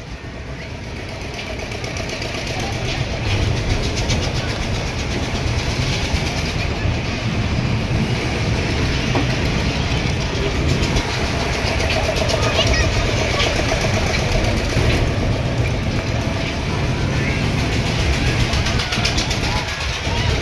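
Steady rushing and rumbling noise of a spinning fairground ride in motion, with wind buffeting the microphone and crowd voices mixed in. It builds over the first few seconds, then holds steady.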